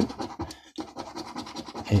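A coin scratching the scratch-off coating from a Gold Fever scratchcard: a run of rasping scrapes with a short pause a little under a second in.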